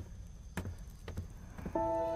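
Slow footsteps, about one soft step every half second, as a person walks up to a bed. Soft music comes in near the end.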